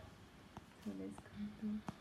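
A woman's brief, quiet murmured voice, a couple of short hummed sounds, with three light clicks spread through.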